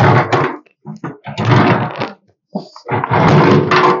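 Hands handling a portable petrol generator's plastic housing and frame: three short bursts of knocking and scraping.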